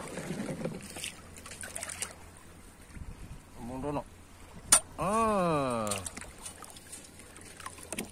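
Spear jab at an octopus in shallow reef water, heard as one sharp click just before halfway, over faint water and handling sounds. It is followed by a man's drawn-out wordless exclamation of about a second, falling in pitch.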